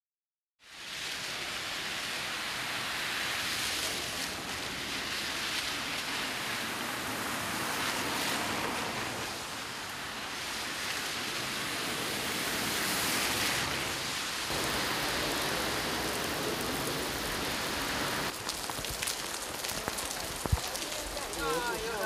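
Heavy rain pouring onto a wet paved street, a steady hiss of drops hitting the surface and standing water. Partway through, a car drives through the flooded road and throws up a spray of water.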